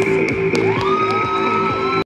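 Music with steady held tones; a note slides up and holds from about halfway through, with light sharp clicks on top.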